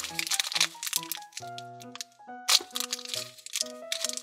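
Thin plastic blind-bag wrapper crinkling as it is pulled open by hand, in bursts during the first second and again about two and a half seconds in, over background music of held notes.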